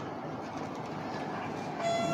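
Steady background noise, an even hiss, with a faint steady tone coming in near the end.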